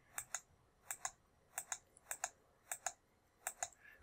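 Faint clicks from a computer keyboard key pressed repeatedly, about six presses at roughly even intervals. Each press sounds as a quick double click, the key going down and coming back up.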